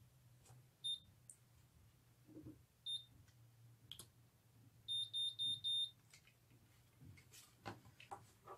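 Curl Secret automatic hair curler beeping while it times a curl on its 8-second setting: a single high beep about every two seconds, then four quick beeps about five seconds in, signalling that the time is up and the curl is ready to release.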